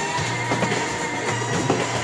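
Background music with a steady bass line and guitar.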